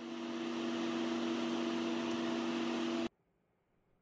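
Laminar flow hood blower running: a steady airy hiss with a low hum, cutting off abruptly about three seconds in.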